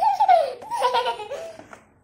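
A young child laughing excitedly, high-pitched and rising and falling in pitch, dying away near the end.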